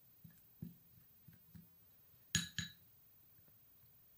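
A plastic spoon stirring a thick powder paste in a small glass bowl, giving a few faint soft taps, then two sharp ringing clinks of glass on glass about a quarter second apart, a little past the middle, as a small glass oil bottle knocks against the bowl.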